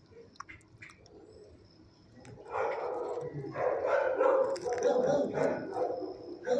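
Dogs barking in a shelter kennel. It is quiet for the first couple of seconds apart from a few light clicks, then the barking starts about two and a half seconds in and goes on in irregular, overlapping bursts.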